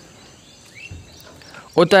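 Faint background ambience with a few short bird chirps, then a voice starts speaking near the end.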